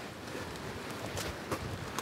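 Steady wind noise on a phone microphone, with a few faint footsteps and rustles of brushed ferns in the second half.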